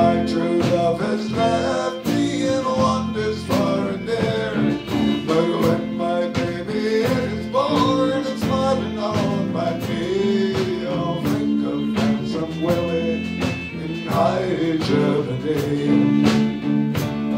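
A live Celtic folk-rock band playing a tune: bowed fiddle over acoustic and electric guitars, bass guitar and a drum kit keeping a steady beat.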